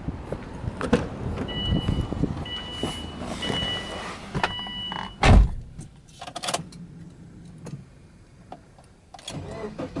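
A car's warning chime beeps four times while the driver's door is open. About five seconds in, the door of the Subaru Forester shuts with a heavy thud. After that the cabin is quiet apart from a few small clicks.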